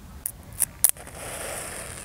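Home-made electric fuse being fired from a car battery: three sharp clicks as the wire ends touch the battery terminals, then, about a second in, the matchstick head flaring and burning with a steady hiss, lit by the thin wire strand heating in the short circuit.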